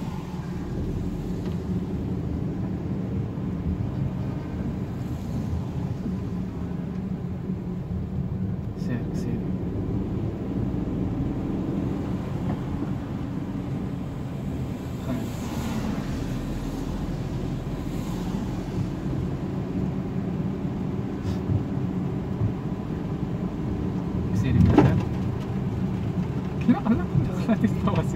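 Inside the cabin of a small petrol car driving on a rain-wet road: a steady running noise of engine and road. A brief louder swell comes near the end.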